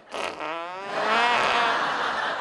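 A long, wavering fart about half a second in, then studio audience laughter: gas that may be from Brussels sprouts rather than appendicitis.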